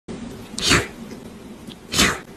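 Kitten sneezing: a short sharp burst about two-thirds of a second in, and another right at the end.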